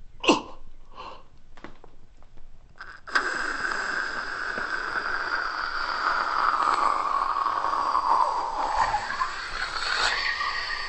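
A few short gasps from a man, then, about three seconds in, a sudden long hiss of air escaping from an inflatable vinyl blow-up doll as it deflates. The hiss is steady and its pitch slowly falls.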